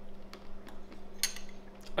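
A few faint, scattered clicks and mouth sounds as a spoonful of ice cream is eaten from a bowl with a metal spoon.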